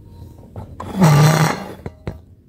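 A woman's loud, breathy sigh close to the microphone, with a low voiced pitch that drops slightly, about a second in. A few small clicks and rustles of the camera being handled come before and after it.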